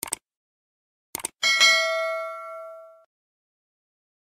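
Sound effects for a subscribe-button animation. Quick clicks come at the start and again just over a second in, like a mouse clicking the button. Then a bright bell ding rings out and fades over about a second and a half.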